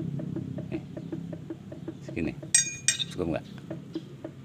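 Two sharp, ringing steel-on-steel strikes about half a second apart, midway through: the steel bar and hammer working the differential's bearing adjuster nut to set the ring gear-to-pinion backlash. A faint, regular light ticking runs underneath.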